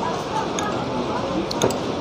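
A metal spoon clinks against a ceramic soup bowl a couple of times about one and a half seconds in. Behind it is a steady background hum with faint voices.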